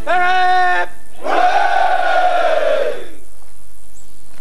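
Soldiers shouting together: a long held call, then many voices answering in one loud shout lasting about two seconds that slowly falls in pitch.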